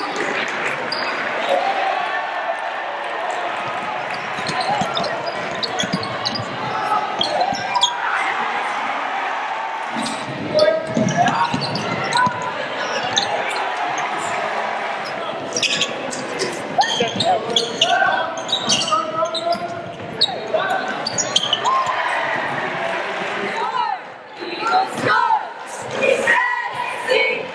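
Basketball game sound in a gym: a basketball bouncing on the hardwood floor against a steady din of crowd and player voices and shouts, echoing in the large hall. The din drops briefly near the end.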